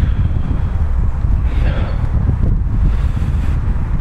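Wind buffeting the microphone: a continuous, uneven low rumble.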